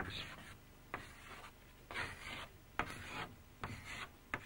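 Chalk drawing lines on a blackboard: faint scraping strokes, about half a dozen, each short.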